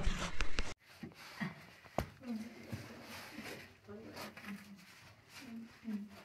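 Faint, muffled vocal sounds and breaths from a caver climbing through a tight rock crevice, with one sharp knock about two seconds in. A short burst of louder speech opens it and cuts off abruptly.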